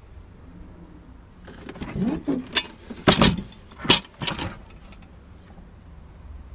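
A burst of knocks, clacks and rattles from objects being handled, lasting about three seconds and loudest in the middle, with a faint low hum underneath.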